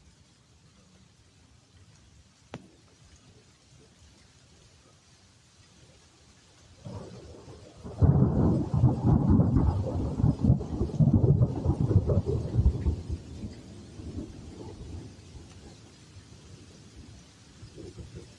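Thunder: a low rumble builds about seven seconds in, rolls loudly for about five seconds, then fades away. Faint steady rain runs underneath.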